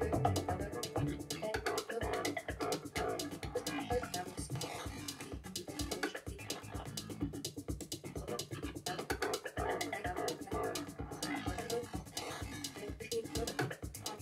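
Live experimental electronic music played on a tabletop setup of electronics: a dense, rapidly stuttering stream of clicks and chopped pitched fragments, without a steady beat.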